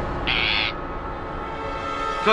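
A parrot's single short squawk, about a third of a second in, over dramatic background music that holds a steady tone.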